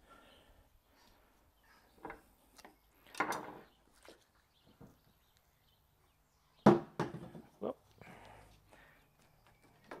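Soft handling sounds of butcher's twine being pulled and knotted around a rolled venison roast, a few faint rubs and pulls. About two-thirds of the way through comes a sudden, short, loud voiced sound.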